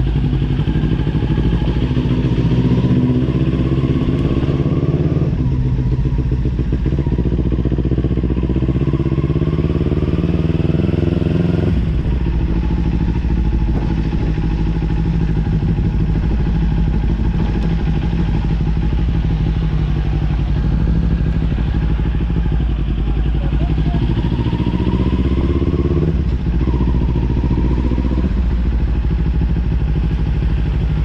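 Kawasaki Ninja 400's parallel-twin engine running under way, its revs climbing over several seconds, then dropping sharply about twelve seconds in, with another climb and fall near the end.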